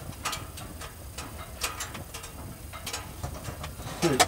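Footsteps crunching in snow as a person walks, heard as irregular short crisp snaps over a low steady rumble.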